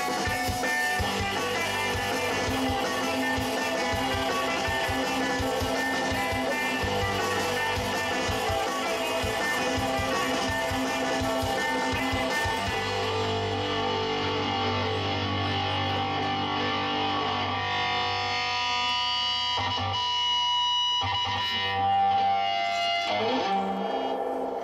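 A recorded rock take with electric guitar played back over studio monitors. About halfway through, the high, dense part of the mix drops away and held chords ring on.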